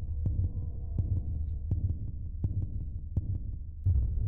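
Low throbbing bass pulse under a faint steady hum, with light clicks about every three-quarters of a second: the intro sound design of a K-pop music video's soundtrack.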